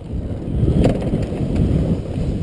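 Dirt bike running slowly over a rough, rocky trail: engine with the bike rattling over the ground and wind on the helmet microphone, getting louder about half a second in.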